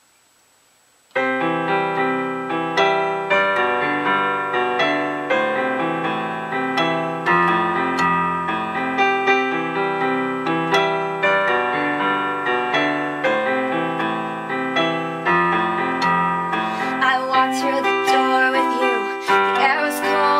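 Electronic keyboard playing a piano-voice intro: sustained chords over a bass note that changes every two seconds or so. It starts about a second in, after near silence.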